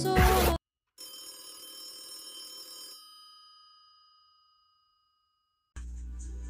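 Intro music with singing cuts off abruptly. After a brief gap, a bell-like chime of several high ringing tones sounds for about two seconds and then fades away. Near the end a steady low room hum comes in.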